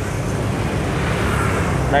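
Steady road traffic noise from passing motorbikes and cars: an even low rumble with a wash of tyre and engine noise, no single vehicle standing out.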